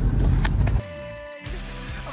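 Low rumble of road and engine noise inside a moving 2009 Subaru's cabin, cut off abruptly just under a second in. After a short lull, music starts.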